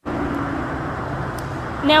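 Steady road traffic noise, with a faint steady low tone during the first moment or so.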